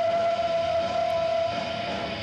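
Rock band playing live, with one long, steady, high held note over the band that rises slightly about a second in.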